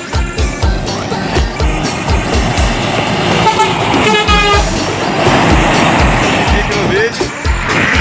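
A Scania semi-truck's air horn sounds once, held for about a second, roughly four seconds in, with the rush of the passing truck on the wet road. It plays over music with a steady thumping beat.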